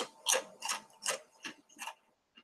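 Potato chips being chewed close to the microphone: a run of six crisp crunches, about three a second.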